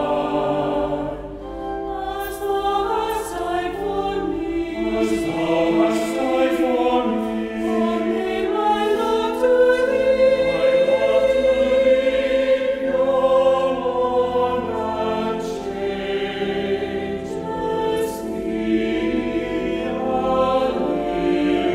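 Choir singing in sustained, overlapping notes.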